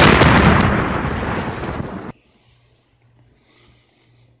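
A sudden, loud explosion-like blast that dies away over about two seconds and then cuts off abruptly, as an inserted sound effect would.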